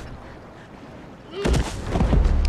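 A single gunshot about one and a half seconds in, breaking a quiet stretch.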